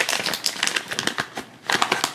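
Foil blind bag crinkling as it is torn open by hand: an irregular run of sharp crackles.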